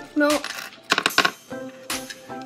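A small hard object clattering a few times on a hard tabletop about a second in, over background pop music, with a brief spoken "oh" at the start.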